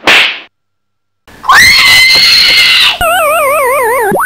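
Cartoon-style sound effects: a brief noisy hit, then a loud, held scream lasting about a second and a half. It gives way to an electronic tone that warbles rapidly up and down.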